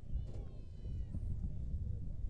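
A distant high-pitched voice calls out once, briefly, over a low rumble.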